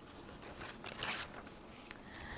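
Faint, brief rustling and scraping noises, with a single click just before the end.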